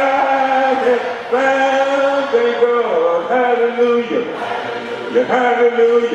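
A man singing a slow hymn a cappella into a handheld microphone, with other voices of the congregation singing along. The notes are long and held, with short breaks between phrases.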